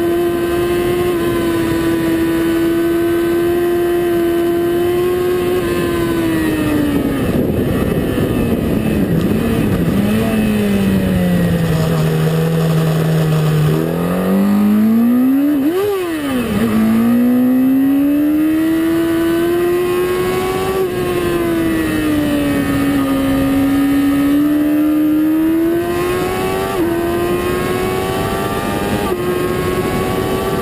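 Yamaha YZF-R1 sport bike's inline-four engine at high revs, heard onboard. Its pitch falls as the bike slows for a bend about a third of the way in, with a quick sharp rev and drop near the middle, then rises again through the gears with short upshift steps near the end.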